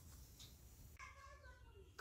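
Near silence, with one faint, slightly falling pitched call about a second in that lasts just under a second.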